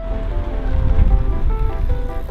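A car driving past close by: a low rumble that swells to its loudest about a second in and then fades. Background music plays over it.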